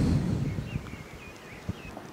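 Outdoor street ambience: a low rumble, like wind on the microphone, fades away in the first half second, then a few faint, short high chirps, typical of small birds, sound through the quieter stretch, with a single light click near the end.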